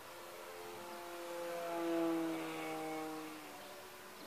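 Electric motor and propeller of an A.R.O. model Fox RC glider flying past: a whine that grows louder to a peak about two seconds in, then drops slightly in pitch and fades.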